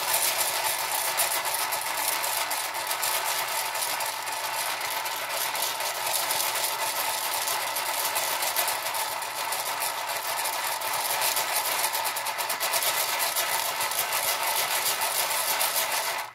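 Sugar pearls rattling inside a lidded plastic takeout container as it is swirled round and round, a continuous, loud, dense clatter of many tiny beads that stops abruptly at the end.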